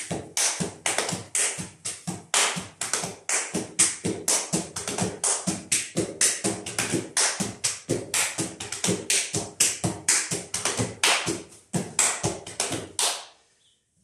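A Roma men's dance slapping sequence performed by one dancer: hand claps, palm slaps on the thighs and boot-heel clicks in a fast, even rhythm of about four to five strikes a second, stopping about a second before the end.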